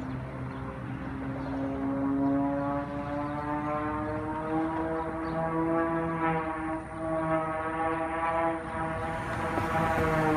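Propeller engine of an aerobatic plane droning overhead as one steady tone, its pitch rising slowly for the first several seconds and then levelling off.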